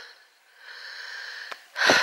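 A soft breath close to the microphone, about a second of even hiss, followed by a small click and the start of a fresh intake of breath just before speech resumes.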